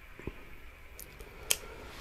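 Handling of an ice fishing rod and reel: a few faint clicks, with one sharp click about one and a half seconds in.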